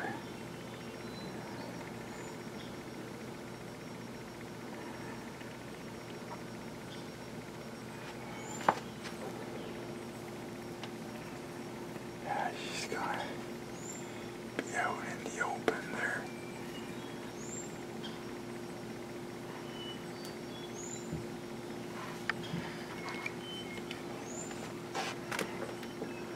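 Quiet outdoor background with a steady low hum, and a bird giving short, high, upward chirps every few seconds. There are a few brief soft rustles and whisper-like sounds around the middle and near the end.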